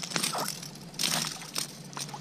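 A hooked ladyfish being reeled in on a spinning rod: irregular sharp clicks and short splashy bursts, the loudest burst about a second in.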